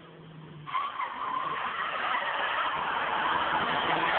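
Nissan S13's tyres screeching as it slides through a drift. The screech starts abruptly just under a second in and grows steadily louder.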